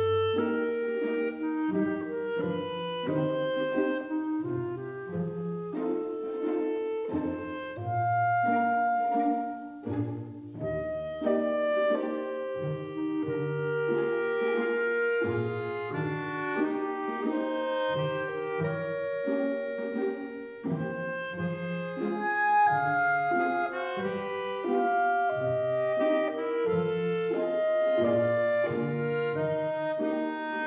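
Instrumental background music: a melody of held notes over a moving bass line, growing brighter about halfway through.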